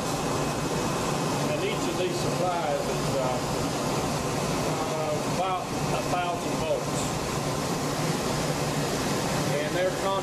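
Steady equipment noise of a high-power broadcast transmitter hall: an even rush of cooling air and machinery with a low hum underneath, unchanging throughout.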